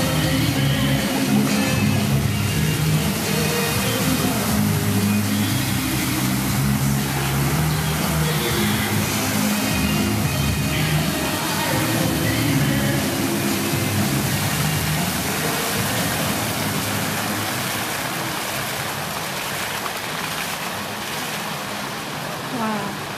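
Music playing for a choreographed water-fountain show, over the steady hiss of the fountain jets. Both fade gradually over the last several seconds as the jets drop.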